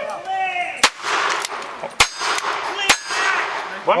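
Three single-action revolver shots, about a second apart, each followed by the metallic ring of steel targets being hit.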